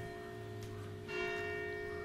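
Church bell ringing: a new stroke about a second in rings on and slowly fades over the hum of the one before.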